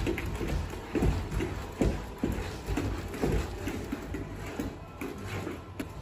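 Music playing, with irregular dull thuds and mechanical whirring from a Unitree G1 humanoid robot's feet and joint motors as it dances on a rubber mat.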